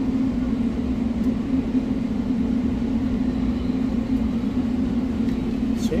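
Steady low hum of running machinery behind a coffee-shop counter, with a few faint clicks.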